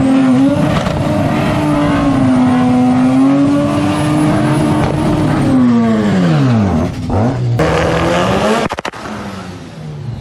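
Mazda RX-7's 13B rotary engine held at high revs through a burnout, with tyre noise, the revs falling away steeply about six seconds in. A second or so later the sound cuts abruptly to a quieter engine running steadily, with a quick run of sharp clicks near the end.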